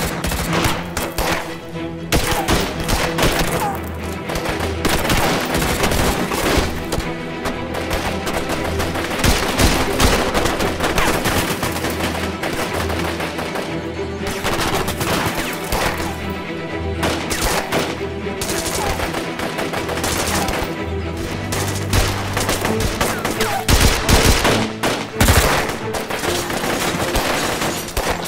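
A prolonged exchange of automatic rifle fire: many rapid shots in dense volleys, with hardly any pause.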